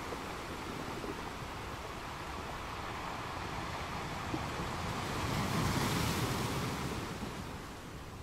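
Ocean surf washing in: a steady hiss of waves that swells louder about five seconds in and falls away again near the end.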